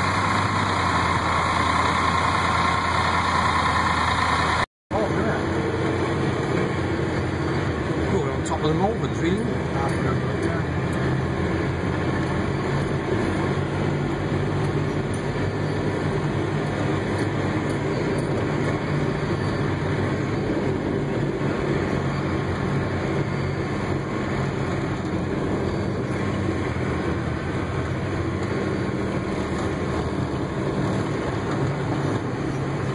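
John Deere tractor's diesel engine running steadily, heard from inside the cab. The sound cuts out briefly about five seconds in, then the engine runs on with a lower, steady note.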